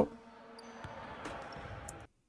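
A basketball bounced a few times on a gym floor as a player dribbles, heard as faint separate knocks over a low hall background.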